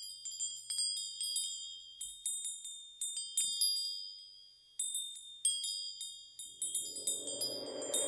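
Opening of a song: high, bell-like chime tones struck at uneven moments, each ringing on briefly. A lower, swelling wash of sound comes in about six and a half seconds in and grows toward the end.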